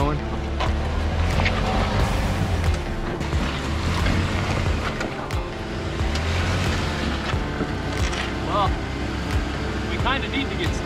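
Jeep Wrangler JK's engine pulling under load as it crawls up rock ledges, its low drone swelling and easing with the throttle. Scattered knocks and scrapes of tyres and underbody on rock.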